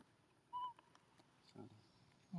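A baby pigtail macaque giving one short, high coo about half a second in. A brief low voice sound comes near the end.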